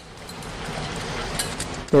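Aluminium foil crinkling and rustling as foil-covered ring molds are handled, a steady rustle that grows a little louder, with a few sharper crackles near the end.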